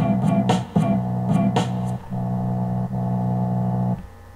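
Lo-fi homemade instrumental beat played through a stereo's speakers and picked up by a laptop microphone: sharp hits over a held low bass note for about two seconds, then the bass note alone, cutting off abruptly at the very end as the track stops.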